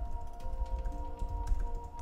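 Computer keyboard typing, a scatter of light clicks, over quiet background music with long held notes.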